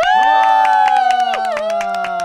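A small group of people cheering with long held shouts and fast clapping, starting suddenly and loud.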